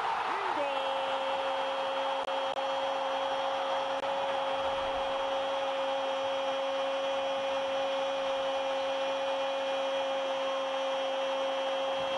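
Television commentator's long held goal cry, sustained on one steady pitch for about twelve seconds, over the stadium crowd's noise right after a goal.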